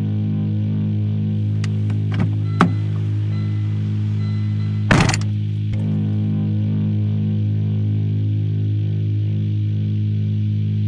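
Film soundtrack of a steady low drone, with a few soft clicks in the first three seconds and one sharp thump about five seconds in.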